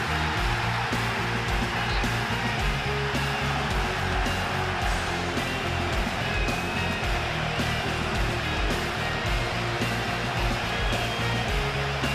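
Background music with held bass notes and a steady beat, over a dense, steady rushing noise.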